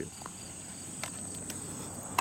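Outdoor insect chorus: a steady, high, even drone, with a few faint clicks about a second in.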